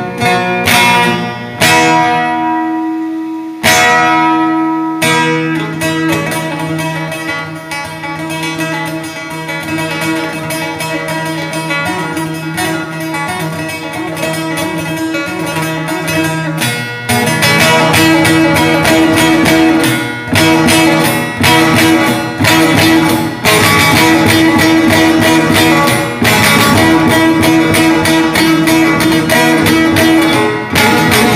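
Long-necked bağlama (saz) played solo with a plectrum. Two struck chords are left to ring in the first few seconds, then a running melody is played over a steady drone, growing louder and busier about halfway through.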